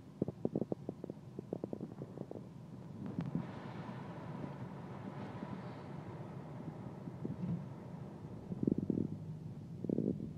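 Car interior noise while driving, with a quick run of clicks and knocks in the first couple of seconds and a few louder low thumps near the end.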